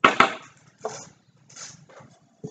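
Two sharp knocks close together as a glass-cylinder centerpiece is handled against a stone countertop, followed by a couple of softer handling noises.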